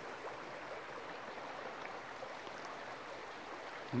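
A small brook running, heard as a faint, steady rush of water.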